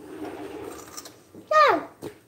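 A young boy's voice: one short, loud vocal sound that falls in pitch, about a second and a half in. Before it, only faint low background noise.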